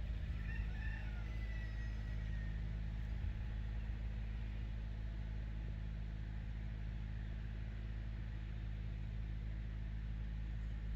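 A rooster crows once about half a second in, the call lasting around two seconds and ending in a drawn-out, slightly falling note. A steady low rumble runs underneath.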